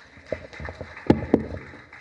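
Footsteps on a stage floor: four or five dull knocks at an uneven pace, the two loudest about a second in.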